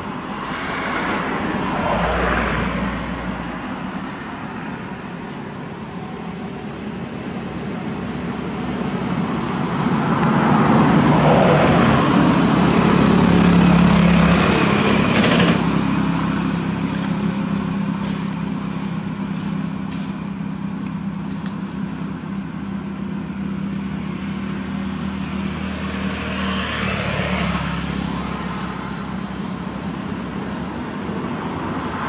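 Road traffic: a motor vehicle's engine swells as it passes, loudest around the middle, then fades into a steady background of traffic noise with smaller swells near the start and end. A few faint clicks come in the second half.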